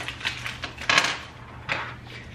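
Small metal parts clinking and clattering on a hard countertop as they are handled. There are a few separate clicks, with a denser rattle about a second in.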